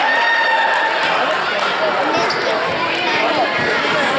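Basketball dribbled on a hardwood gym floor, a few low bounces heard under many voices talking and calling out in the gym.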